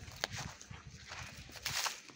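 Footsteps on gritty, rough ground: a sharp step early on and a longer, louder scuff near the end, over a low rumble.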